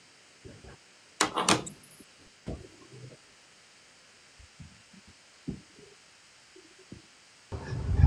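A lull in a conversation, with brief, indistinct sounds from the participants' microphones: a short voice-like burst a little over a second in and a few faint knocks scattered after it.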